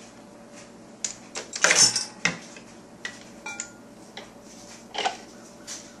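Plastic and metal parts of a Green Star twin-gear juicer knocking and clicking as it is taken apart by hand: the plastic housing comes off and the metal twin gears are drawn out. A cluster of knocks comes about two seconds in, with single clicks later.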